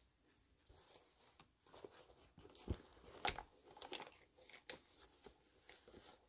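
Faint rustling, crinkling and small clicks of handling: a cloth face mask being tucked into a vegan-leather clutch among small toiletry bottles, starting about a second in.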